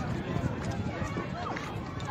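Children's voices calling and chattering in the distance over a steady low rumble of wind buffeting the microphone.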